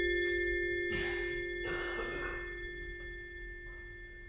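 The final sound of a school concert band's piece dying away: a few struck bell-like percussion tones and one lower note ring on, fading slowly. There are two short noises about one and two seconds in.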